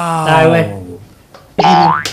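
Speech only: a man's voice says a short phrase at the start, then a brief pause, and another voice starts just before the end.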